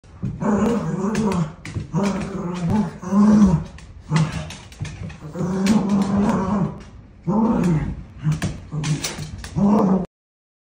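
Two Cavalier King Charles spaniels play-wrestling and growling, a string of growls about a second long each, one after another, with scattered sharp clicks between them.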